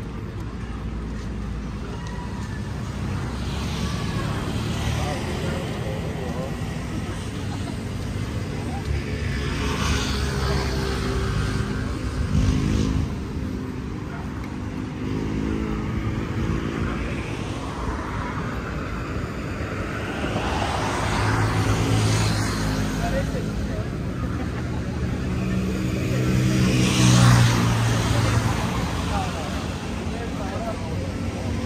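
Street traffic: motor vehicles passing close by, their engine noise swelling and fading three times over a steady low hum, with people's voices in the background.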